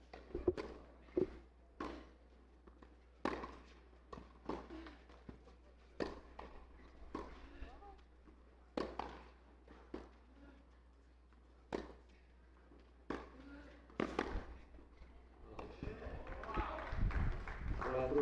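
Tennis ball struck by rackets in a baseline rally on a clay court: sharp pops about every one to one and a half seconds, with softer ball bounces between them. The rally ends near the end, and voices rise as the point finishes.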